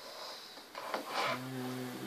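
A person breathing out sharply through the nose twice, then a steady low hum held for about a second, starting past the middle.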